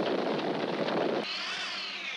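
Electronic sound effects: a dense crackling hiss, then about 1.3 s in a swooping multi-tone sweep that rises and falls away.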